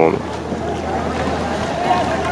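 Steady wind noise on the microphone over open water, with a constant low hum underneath.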